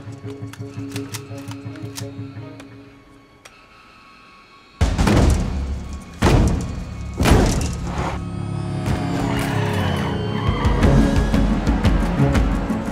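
Film score with a pulsing rhythm that fades away, then, after a brief lull, three heavy hits about five, six and seven seconds in, leading into a loud, sustained low passage.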